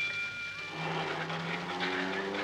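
Radio sound effect of a car: a high, steady horn-like tone ends about half a second in, then a car engine starts running with a low, steady note that climbs a little near the end.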